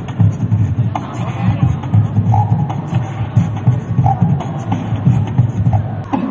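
A beatboxer performing into a handheld microphone: a fast, steady rhythm of vocal bass kicks and snare hits, with a few short pitched notes laid over it.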